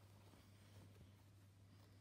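Near silence: faint rustling of a fabric embroidery block being handled and turned over, over a steady low hum.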